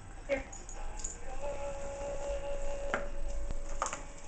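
Small dog whining in a thin, steady, high pitch for a couple of seconds while it begs for a treat held just out of reach, with a few light taps near the end.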